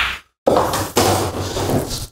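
Pool balls in play: the cue ball clacks into the 8-ball, then two more knocks follow about half a second and a second in as balls hit the cushions and the pocket, with a low rolling rumble under them.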